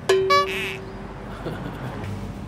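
Electronic sound effect: a sharp downward swoop that settles into a steady held tone for about a second, with a brighter pitched blip just after it starts.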